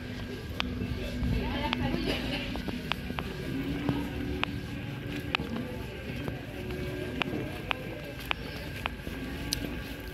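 Street ambience of distant voices and music, broken by sharp clicks at uneven intervals about once a second.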